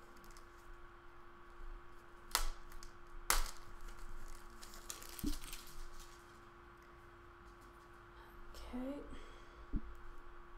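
Hands handling craft materials on a table: two sharp crackles a couple of seconds in, then rustling and soft knocks, over a steady electrical hum. A short murmur of a voice comes near the end.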